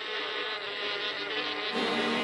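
A swarm of hornets buzzing around their nest in a steady drone, a cartoon sound effect.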